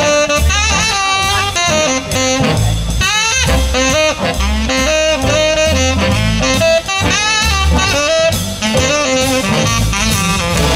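Jazz big band playing an instrumental passage: a saxophone solo over bass, drums and horn backing.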